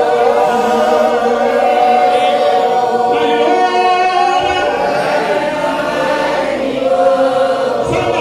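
A church congregation of mainly women's voices singing together in long, held notes.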